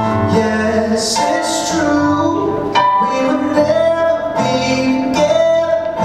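A man singing live to his own keyboard accompaniment: held piano-like notes and chords under a male vocal line.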